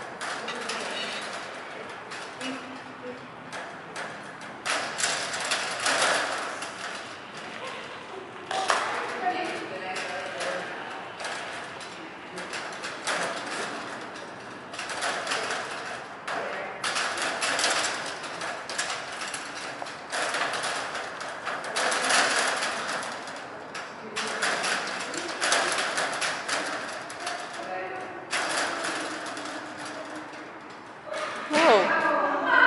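Indistinct voices, too unclear to make out words, with scattered light knocks and movement noise.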